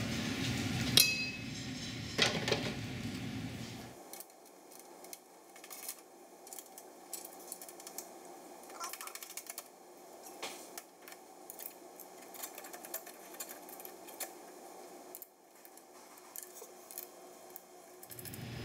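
Sheet-metal product guides being fitted by hand to a banding machine and fastened with knobs: scattered small metallic clinks and clicks. There is a louder stretch of handling in the first few seconds, then it goes faint.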